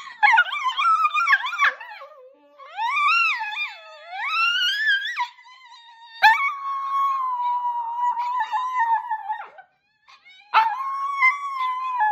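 Dogs howling: long, wavering howls that glide up and down in pitch, an Italian greyhound howling along with other dogs' howls. A long, nearly level howl runs from about six seconds in to nearly ten, then a short break before the howling starts again near the end.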